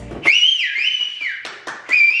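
Whistling: a clear whistled tune that slides up to a high note, then steps down and back up between a few held pitches.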